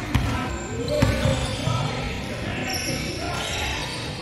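Indoor basketball game sounds: a basketball bouncing on a hardwood gym floor, with scattered voices of players and spectators in the background.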